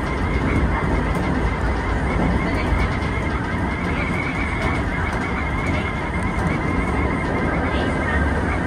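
Keisei 3400-series electric train running, heard from inside its driver's cab: a steady rumble of wheels on rail and running gear, with a faint wavering high whine above it.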